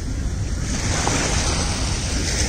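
Sea waves washing against the shore with wind buffeting the microphone: a steady low rumble, with the hissing wash of the water swelling up a little under a second in.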